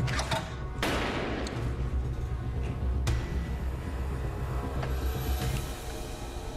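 Staged gunshots over a low, pulsing dramatic music score: a loud shot about a second in that rings on, another near three seconds, and a few smaller cracks between.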